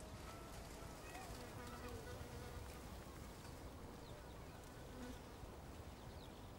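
Faint buzzing of a flying insect, such as a fly, its pitch wavering up and down as it moves about, over low field ambience.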